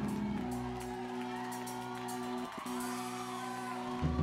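Background worship music in a church: a keyboard with an organ sound holding a steady, sustained chord under the pause in the preaching.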